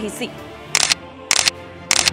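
Three short, sharp clicks about 0.6 seconds apart over steady background music, a sound effect marking the cut from the studio to field footage.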